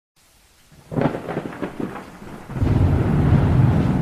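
Thunder over a faint rain hiss: crackling strokes about a second in build into a loud, low, sustained rumble through the second half.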